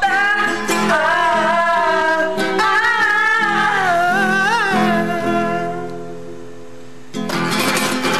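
A young woman singing a pop song over acoustic guitar, ending the phrase on a long held, wavering note that fades away. About seven seconds in, the steel-string acoustic guitar comes in loudly with strummed chords.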